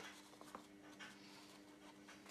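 Faint rustling and scratching as a glue-coated scouring pad is pressed and rolled in loose scatter material in a plastic tub, with a faint steady hum underneath.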